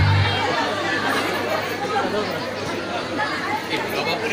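Many people chattering and talking over one another in a crowded, large store. Music with a strong bass cuts out about half a second in.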